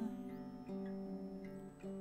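Acoustic guitar played softly on its own between sung lines, its notes left ringing. Fresh notes are picked about two-thirds of a second in and again near the end.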